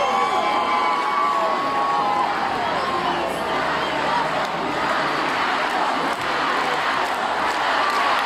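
Large arena crowd cheering between songs at a rock concert. Over the first two to three seconds, long wavering shouts from individual voices stand out; after that it settles into an even wash of cheering.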